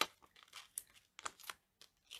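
Stiff cardstock and paper layers rustling and crinkling as they are handled, in short scattered ticks and rustles, with a sharper click right at the start.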